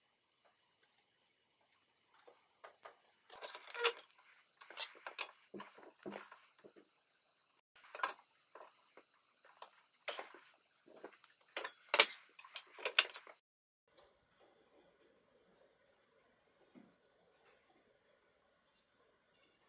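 Pliers gripping and bending a thin laser-welded steel sheet clamped in a bench vise: a run of irregular metallic clinks and scraping rasps, the loudest a sharp clank about twelve seconds in, stopping about three-quarters of the way through.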